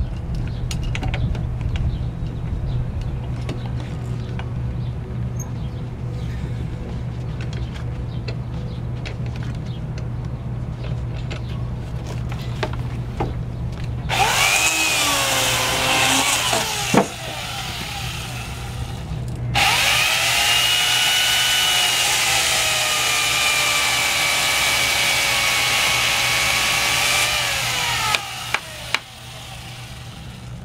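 Electric drill running in two long stretches, about five seconds and then about eight seconds, its pitch rising and falling with trigger and load as it works in the schooner's wooden framing. Three sharp knocks near the end.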